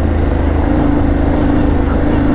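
Yamaha Ténéré 700 World Raid's 689 cc CP2 crossplane parallel-twin engine running under way at steady revs, its note held level while the bike rolls along a gravel track.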